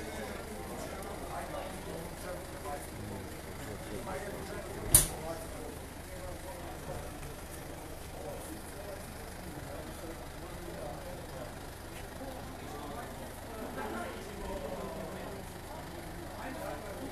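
Passenger van engine idling, a steady low hum, under indistinct crowd chatter; a single sharp knock about five seconds in.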